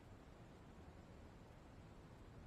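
Near silence: room tone with faint steady hiss.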